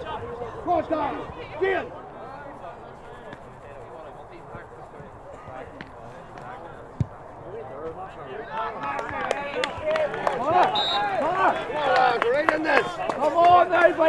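Indistinct shouting and calling from players and sideline voices across an outdoor Gaelic football pitch. It is quieter in the middle with a single sharp thud, then builds into a busier stretch of overlapping shouts over the last five seconds.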